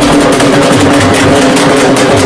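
Live procession band music, very loud and unbroken: fast drum beats from a big drum over a steady, held melody line.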